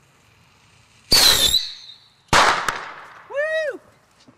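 A lit firework going off: a loud hissing burst with a high whistle about a second in, then a sharp bang about a second later. A short shout follows near the end.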